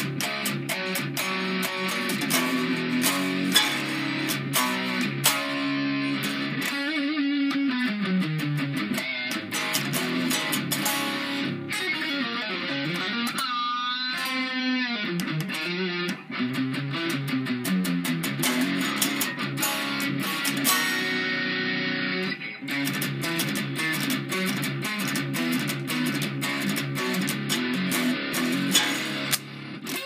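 Electric guitar played through a VeroCity Super Lead Xtra Gain drive pedal, switched on for a heavily distorted lead tone, with continuous riffing and chords. About seven seconds in a note slides downward, and around fourteen seconds a held high note is shaken with wide vibrato.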